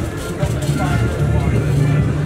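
Background voices of people talking over a steady low rumble.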